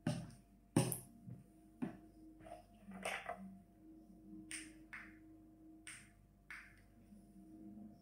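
A wooden spoon knocking against the side of a metal mixing bowl as cold soup is stirred, with three sharp knocks in the first two seconds, followed by a few soft, short rustles.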